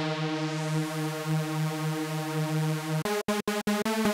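Arturia MiniFreak V software synthesizer playing a held note on a patch of two detuned Superwave sawtooth oscillators through a resonant low-pass filter, with a little high end at the start of the note that fades away. About three seconds in, it changes to quick repeated short notes, about five a second.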